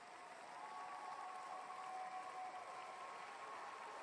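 Faint audience applause, an even patter of many hands clapping, with two thin steady tones held over it for a couple of seconds.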